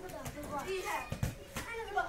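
Young children's voices calling and chattering while they play, with a couple of low thumps just past a second in.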